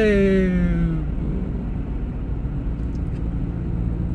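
Steady low rumble of a car driving, heard from inside the cabin: engine and tyre noise on the road. A drawn-out, falling vocal hesitation fills the first second.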